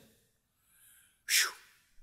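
A man's single short, sharp breath noise about a second and a half in: a hissing huff that falls in pitch, otherwise a pause with little sound.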